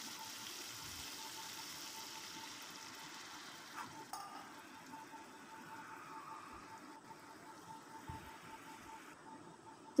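Faint sizzle of a tomato and spice paste frying in oil in a kadai, the masala cooked down until the oil separates. The hiss thins out about halfway through.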